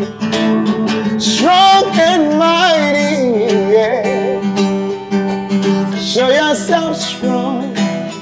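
Acoustic guitar strummed under a man singing a gospel song, his voice running up and down in melismatic ad-libs.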